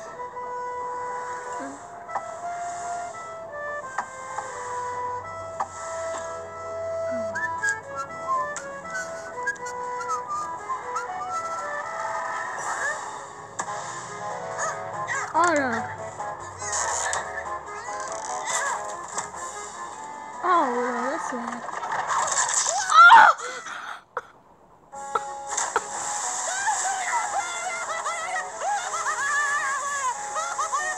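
Cartoon soundtrack playing: background music with the characters' voices and sound effects. A loud sudden sound comes about 23 seconds in, followed by a second or so of near silence before the music picks up again.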